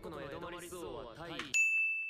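Anime dialogue cuts off abruptly as the episode is paused, and a single bright ding sound effect rings out and fades, marking the pause.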